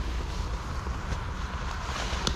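Wind buffeting the microphone as a steady low rumble, with a few faint rustles and clicks.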